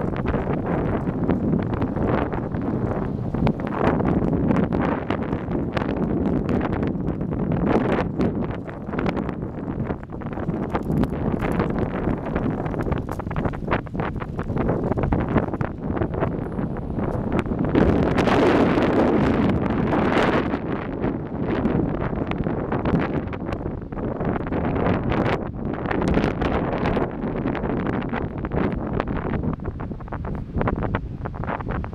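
Wind buffeting the microphone of a camera on a moving bicycle: a steady rumbling rush, with a louder gust about two-thirds of the way through.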